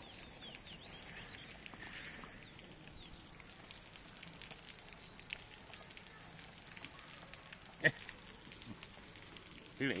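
Puppies scuffling on dry, clumpy soil and straw: faint crackling and scratching throughout, with one sharp click near the end.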